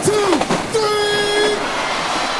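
DJ-intro sound effects: a sharp hit, a falling pitch sweep, then a held horn blast of nearly a second.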